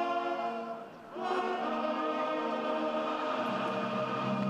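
Military band brass holding a full sustained chord that breaks off just under a second in; after a brief pause a new chord swells in and is held.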